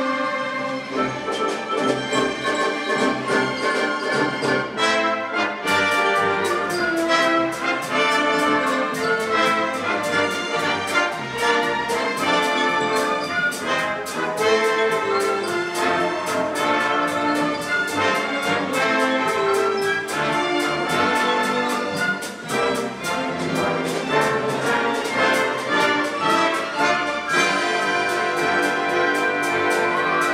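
Full pops orchestra playing the opening of a Broadway show-tune medley, brass prominent over strings and woodwinds. A steady rhythmic beat of sharp strokes comes in about six seconds in.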